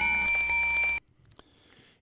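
A steady electronic tone of several fixed pitches, like a beep or chime, held for about a second and then cutting off abruptly.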